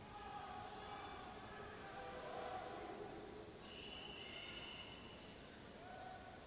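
Faint murmur of spectators' voices echoing around an indoor pool, then a single long, steady referee's whistle blast of about a second and a half, a few seconds in. The whistle calls the backstroke swimmers to the wall to take their starting position.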